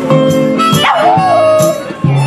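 A dog howling along to strummed acoustic guitar with a box-drum beat: about a second in it gives a sharp rising-and-falling cry that settles into a wavering howl held for most of a second.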